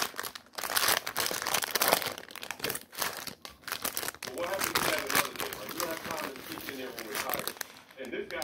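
Plastic wrapper of a Nutter Butter Cakesters snack cake crinkling as it is pulled open by hand.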